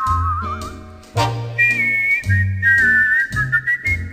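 Recorded 1940s dance-band music: a whistled melody line with a wavering vibrato floats over bass notes and sustained band chords. The full band strikes a new chord about a second in.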